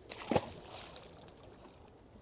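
A blackfish (tautog) released by hand splashes once into the sea about a third of a second in, followed by faint water wash.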